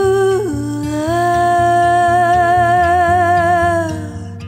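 A woman's voice holds out the last sung word of a slow acoustic country song. The pitch steps down about half a second in, then settles into a long note with vibrato that fades near the end, over a quiet acoustic guitar accompaniment.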